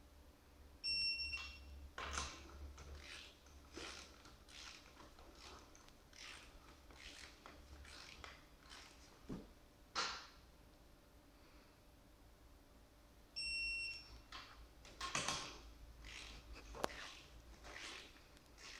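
Digital torque wrench beeping twice, each a short high steady beep about half a second long, signalling that a wheel nut has reached its set torque of 113 N·m. Between the beeps come the ratchet clicks and knocks of the wrench working the nuts.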